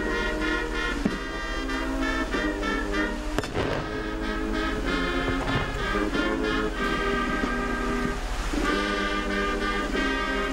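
Military brass band playing, with sousaphones and trumpets carrying chords that change in a steady rhythm. A single sharp hit sounds about three and a half seconds in.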